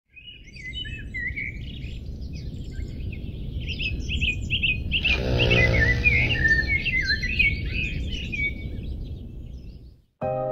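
Songbirds chirping and trilling over a steady low background rumble, with a brief swell of noise about halfway through. The sound fades out near the end.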